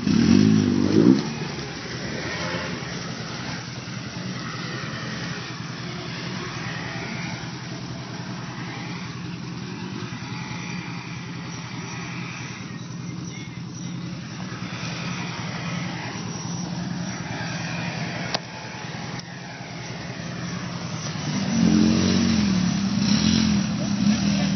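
Polaris RZR side-by-side's engine running under load as it wades through deep water, revved up and back down about a second in and again near the end, running steadily in between.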